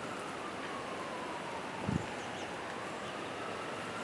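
Steady wind and rustling outdoors, with a faint distant siren wailing, its pitch slowly falling and then rising again. A short low thump comes just under two seconds in.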